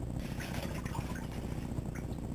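A towel rubbing over wet skin and hair, making faint, irregular rustling over a steady low hum.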